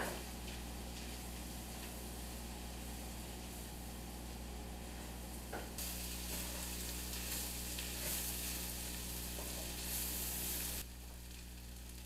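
Shredded chicken and diced vegetables frying in bacon grease in a cast-iron skillet: a steady sizzle while a wooden spoon stirs them. The sizzle grows louder and brighter about halfway through and drops back shortly before the end.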